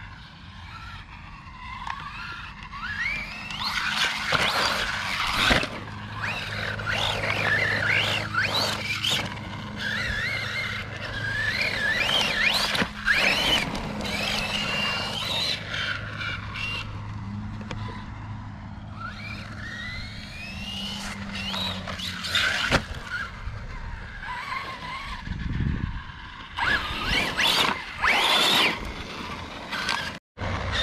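Losi Baja Rey RC trophy truck on a 3S LiPo, its brushless motor and drivetrain whining up and down in pitch as the throttle is worked again and again. Short bursts of tyre and dirt noise come as it lands and slides.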